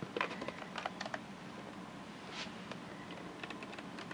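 Small clicks and taps of hard plastic being handled, as a generic epinephrine auto-injector is lined up against a plastic container. There are several clicks in the first second or so, then only a few faint ticks.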